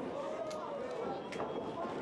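Audience murmur and chatter in a large hall, with a couple of faint knocks.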